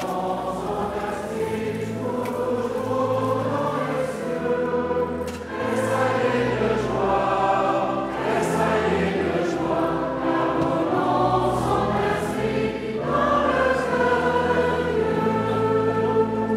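A choir singing a hymn together in slow phrases of long held notes.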